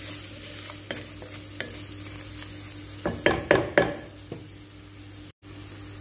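Wooden spatula stirring and scraping chopped onion, garlic and ginger frying in oil in a pan, over a steady low sizzle. A run of louder scrapes comes about three seconds in.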